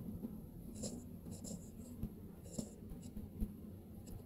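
Stylus writing on a tablet screen: faint scattered taps and short scratches of the tip on the glass.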